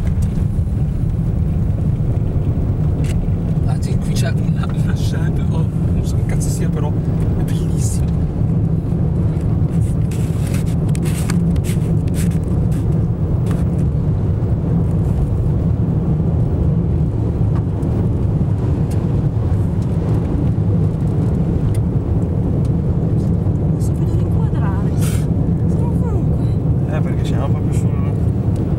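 Steady low rumble of road and wind noise inside a moving car's cabin, with scattered short clicks and rattles.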